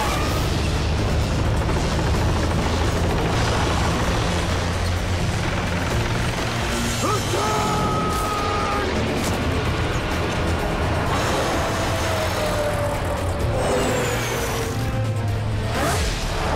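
Sound effects of animated off-road vehicles racing: steady engine rumble and mechanical clatter, mixed under an action music score.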